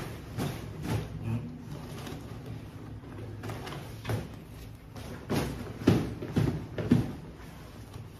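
A large nylon hiking backpack being handled: fabric rustling and a series of short knocks and thumps as the top of the packed bag is opened and worked, most of them in the second half.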